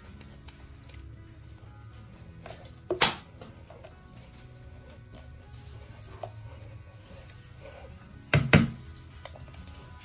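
Quiet background music, broken by a sharp knock about three seconds in and a quick double knock near the end: a plastic sieve of acerola pulp knocking against a metal pot as it is shaken to strain the juice.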